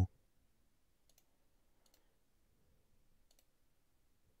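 A few faint computer mouse clicks, spaced irregularly.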